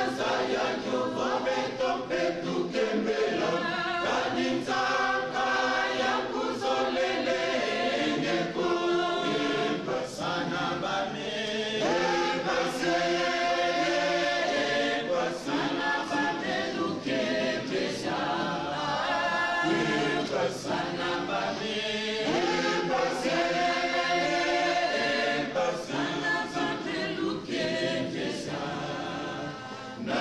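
A choir of many voices singing together in chorus, a sustained melodic line held with no break.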